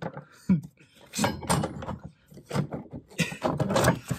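A man's voice in short wordless bursts, probably laughing, with no clear sound from the jack being turned.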